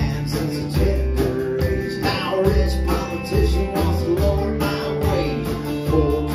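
Live country band playing with guitars, banjo, upright bass and drums.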